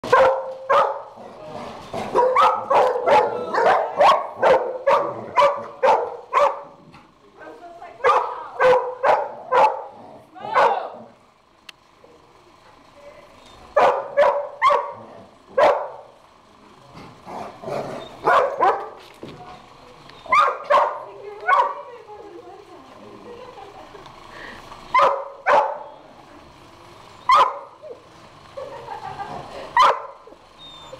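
Dogs barking during play: runs of sharp barks about two a second, then scattered groups of barks with pauses between them.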